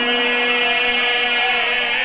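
A man's voice holding one long chanted note through a microphone, steady in pitch.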